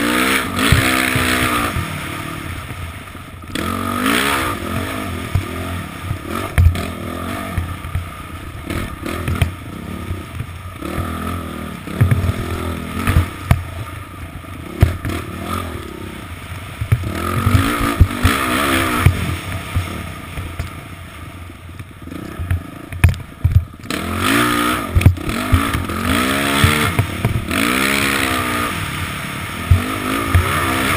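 Dirt bike engine revving up and down over and over as the throttle is worked along the trail, heard from a helmet-mounted camera. Many short knocks and rattles from the bike over bumps, with a constant rushing hiss.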